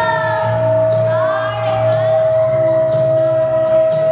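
A girl singing into a microphone over backing music, with one long note held steady underneath.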